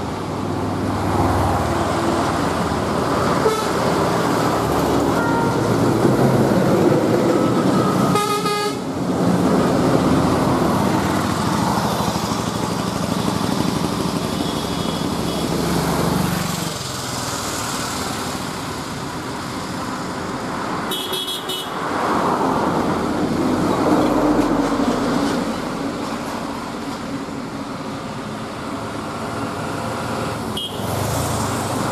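Buses and trucks passing on a highway, engines running and tyres on the road. Horns sound about eight seconds in and again around twenty-one seconds.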